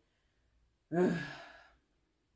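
A person's sigh about a second in, with voice in it, loudest at the start and falling in pitch as it trails off over about a second.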